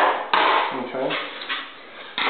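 A metal hand tool set down on the paper cutter's metal tray with a sharp clank about a third of a second in, followed by brief handling noise.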